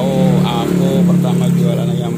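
A person talking, over a steady low hum.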